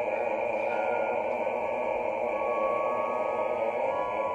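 Opera orchestra holding a long sustained chord under a singer's held note, which wavers with vibrato. Higher held notes join the chord about half a second and two seconds in.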